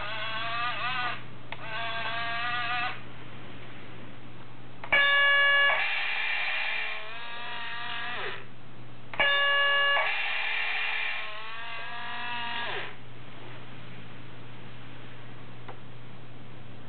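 Small built-in speaker of an Aoshima 1/32 radio-controlled model bus playing its sound effects. Two short recorded voice announcements come first. About five seconds in, a brief multi-tone chime is followed by a longer announcement, and the chime-and-announcement plays again about four seconds later. The chimes are the loudest sounds.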